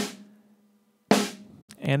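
Snare drum hits from the Drumagog drum-replacement plugin on a soloed snare track: two strikes about a second apart, each ringing out and fading. With bleed reduction on, no false hits from the kick drum come through, only the snare.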